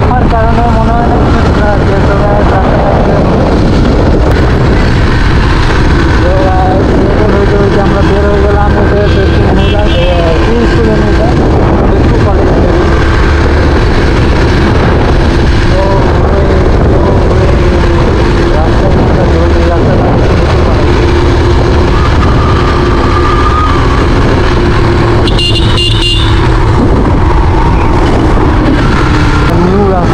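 Riding noise from a moving Yamaha motorcycle: a steady, loud rush of wind over the microphone mixed with the engine and tyre noise. A horn beeps briefly near the end.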